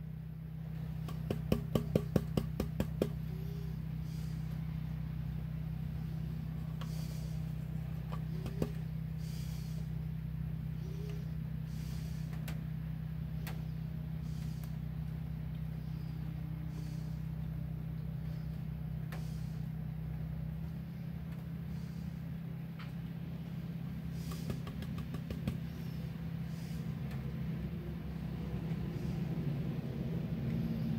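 Plastic gold pan being tapped by hand, a quick run of about eight knocks about a second in and one more later, which settles the heavy gold while rocking washes off the lighter black sand. Soft water sloshing in the pan over a steady low hum.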